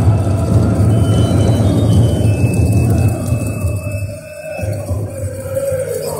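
Powwow drum group: several drummers striking a large bass drum in unison while singers chant a high, fast fancy-dance song. About four seconds in the drumming drops away and the singing carries on more quietly, its pitch falling.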